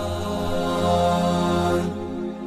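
Background vocal music: a single voice chanting in long held notes over a low steady drone, the low part fading away near the end.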